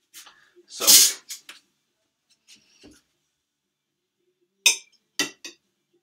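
A single short, loud sneeze-like burst of breath about a second in. Near the end come three light, sharp clicks of a utensil or egg against a ceramic plate as boiled eggs are handled.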